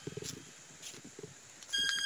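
Quiet at first, with a few soft low thuds; then, near the end, a loud, steady, high-pitched whine with several overtones starts abruptly and holds.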